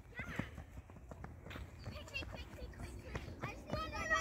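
Quick, light footsteps of a child running on a synthetic athletics track and stepping through an agility ladder, with faint distant children's voices.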